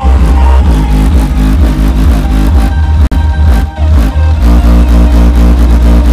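Electronic dance music with very heavy bass played at high volume through a modified Maruti Swift's high-output competition car audio system.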